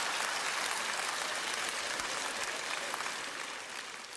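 Studio audience applauding after a punchline, the clapping slowly dying down toward the end.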